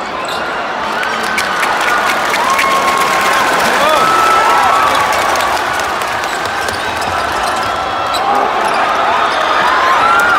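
Live basketball game heard from the stands: a steady murmur of crowd chatter, with the ball bouncing on the hardwood and repeated short squeaks of sneakers on the court.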